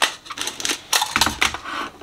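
Art supplies handled on a tabletop: a quick series of small clicks and clatters, with a few duller knocks a little past halfway.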